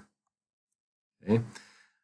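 Near silence for about a second, then a man says "okay" and his voice trails off into an exhaled breath.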